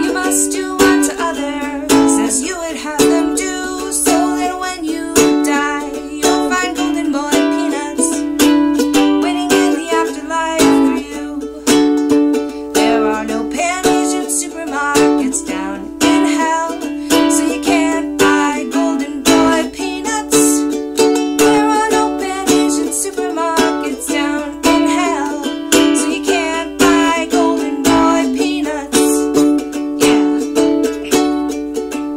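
A ukulele strummed in a steady, even rhythm, ringing out the chords of a song.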